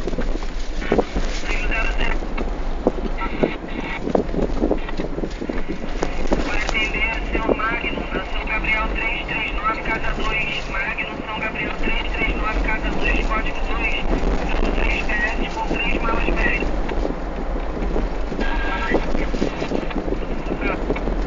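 Vehicle noise with wind buffeting the microphone, under indistinct background voices and a busy high chattering that fills the middle of the stretch.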